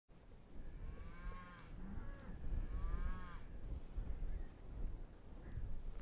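Cattle lowing faintly, two calls of under a second each, about a second and a half apart, over a steady low rumble.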